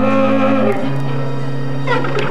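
Free-improvised jazz with saxophone and guitar. Held low notes shift pitch about three-quarters of a second in, and a quick falling glide slides down near the end.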